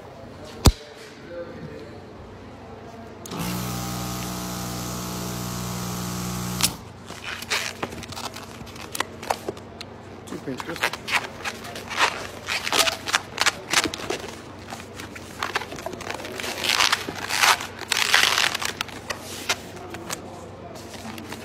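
A sharp click, then an electric balloon inflator running steadily for about three and a half seconds while a long latex twisting balloon is filled. After it cuts off, the rubber squeaks and rubs in many short bursts as the balloon is stretched and twisted, busiest near the end.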